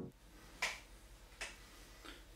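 Two short, sharp clicks, a little under a second apart, faint against a quiet background.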